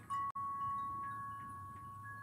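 A steady, pitched ringing tone, fading slowly, with a few faint short chime-like notes above it; a brief click-like drop-out about a third of a second in.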